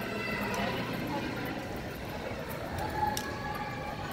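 Indistinct chatter of visitors in a large exhibit hall over a low steady hum, with a brief held tone about three seconds in.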